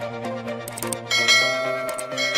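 Electronic background music, with a bright bell-like chime sound effect striking about a second in and ringing on: the notification-bell effect of an animated subscribe button.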